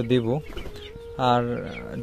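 Tiger chicken hens clucking in a coop, mixed with a man's voice.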